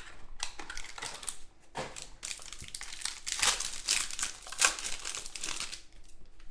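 A cardboard 2019-20 Donruss Choice basketball card box being opened by hand and its contents handled: irregular crinkling and rustling of cardboard and wrapper, busiest a little past the middle.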